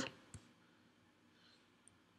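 Near silence with a few faint, short clicks of a stylus tapping on a tablet screen during handwriting.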